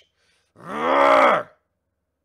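A man's voice letting out a drawn-out, acted growling yell, 'Rrrargh!', about a second long and starting about half a second in, rising and then falling in pitch.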